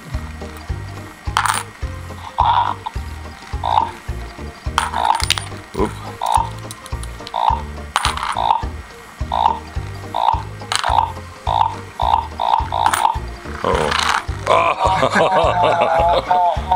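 WowWee MiP toy robot playing its stack-game tune through its small speaker: a steady bouncy electronic beat with short repeating blips. Coins are dropped onto its plastic tray with several sharp clinks, and near the end a wavering electronic tone joins in.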